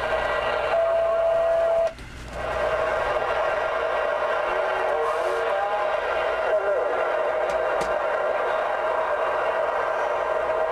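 Galaxy DX-959 CB radio on receive, its speaker giving out static with faint, garbled distant voices: skip coming in on the 11-metre band. A steady whistle-like tone runs through the static, and the sound dips briefly about two seconds in.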